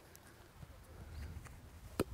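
Faint low outdoor rumble, then a soccer ball landing on a boy's thigh with one short thud at the very end as he traps it.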